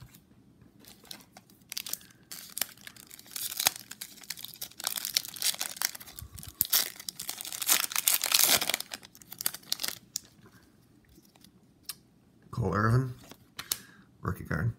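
The foil wrapper of a Topps baseball card pack being crinkled and torn open by hand, a run of crackling and ripping that is loudest shortly before it stops. A short bit of voice follows near the end.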